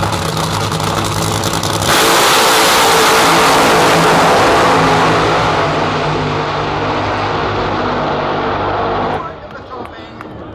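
Two nitro funny cars' supercharged, nitromethane-burning V8 engines idle on the start line, then go to full throttle together about two seconds in as the cars launch. The sound is very loud at first and fades steadily as the cars run away down the strip, then cuts off sharply near the end as the engines shut off past the finish line.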